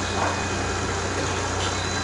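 Steady low mechanical hum of a restaurant interior with a thin high whine, and faint voices in the background.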